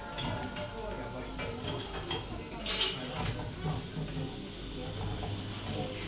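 Coffee-shop ambience recorded binaurally: crockery and cutlery clinking, with a sharp clatter about halfway through, over a murmur of customers' voices.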